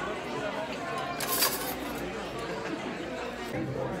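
Background chatter of a busy restaurant dining room, with a brief clatter of cutlery about a second and a half in.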